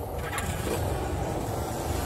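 A steady low rumble, heavy in the bass, from the trailer's sound design.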